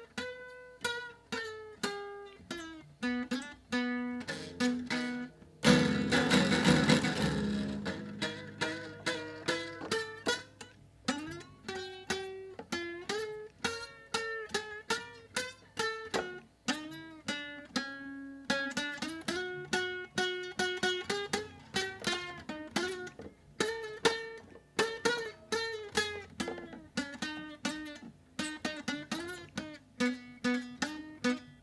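Nylon-string acoustic guitar with a busted bridge, picked one note at a time in a slow melody of about two notes a second. About six seconds in, one louder strummed chord rings for a couple of seconds. The broken bridge leaves the top strings out of tune.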